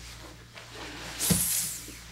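Grapplers in gis shifting position on a mat: a soft thump about a second in, followed by a half-second hiss of gi cloth rustling.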